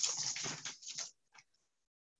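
A pause in speech: a faint, brief noise trails off in the first second, then silence.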